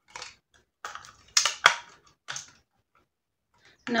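A hard plastic sports water bottle being worked by hand: short rubbing and rattling bursts, with two sharp clicks about a second and a half in, as its flip-top lid and safety lock are pushed and pulled.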